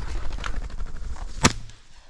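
A single 12-gauge over-under shotgun shot, about one and a half seconds in, fired at a flushing pheasant, with too much lead on the bird.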